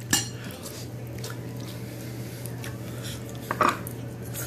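A spoon clinking and scraping against a ceramic bowl of food, a sharp click at the start and a few lighter ones, with a louder one near the end, over a steady low hum.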